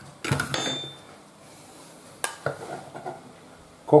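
Metal clatter and clinks from handling a stainless-steel coffee grinder bowl and a spoon: a clatter with a brief ringing clink about half a second in, then a sharp click a little after two seconds and a few softer knocks.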